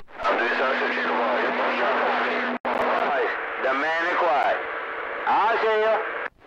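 CB radio receiving on channel 6: static hiss with a steady low tone, and weak, garbled voices of other stations breaking through, cutting off suddenly about two and a half seconds in and again just after the end as transmitters key and unkey.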